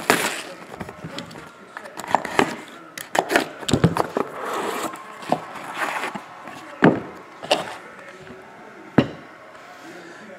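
Plastic shrink wrap being torn and crinkled off a trading-card box, then the cardboard box being opened and a card in a rigid plastic holder handled, with scattered sharp clicks and knocks. The crinkling fills the first several seconds. A few separate clicks come near the end.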